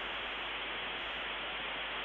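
Steady, even hiss of static noise with no music or voice over it.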